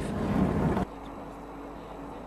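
Road and engine noise inside a moving van, cut off abruptly a little under a second in, giving way to a quieter steady hum with a faint low tone.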